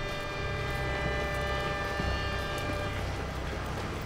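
Train sound effect: a steady low rumble of a train running, with a chord of long held tones over it that fades out about three seconds in.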